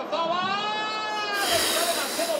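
A man's long, wordless groan of alarm that rises and then falls in pitch, followed about one and a half seconds in by a hissing puff of breath blown out through the lips.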